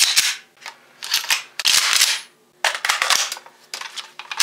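A run of loud, sharp gun sounds, about five in four seconds, each cut off quickly with a short tail.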